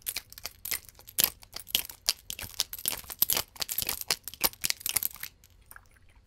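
Rapid, irregular tapping and clicking on a glass perfume bottle and its cap as they are handled, with the cap coming off. It stops a little after five seconds in.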